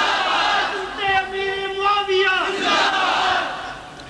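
Call-and-response chanting: a crowd shouts in unison, then a man calls out a long, drawn-out held note that falls away at its end, and the crowd shouts back again.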